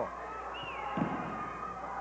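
A single heavy thud about a second in: a wrestler's body hitting the canvas of the ring, over faint arena background noise.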